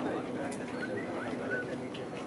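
Birds chirping, a few short high calls a little under a second in, over faint distant voices.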